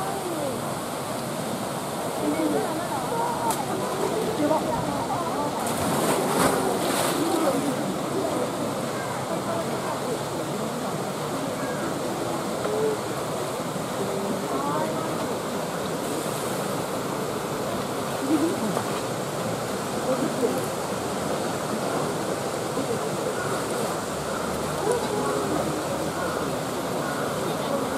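A polar bear splashing into and swimming in its pool, with a louder splash about six seconds in, under the steady chatter of a crowd of onlookers.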